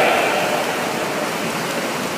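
Steady splashing and churning of pool water from many swimmers swimming at once.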